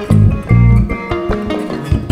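Instrumental passage of Malian band music: plucked ngoni lines and balafon notes over bass guitar and hand percussion, with heavy bass notes near the start and about half a second in.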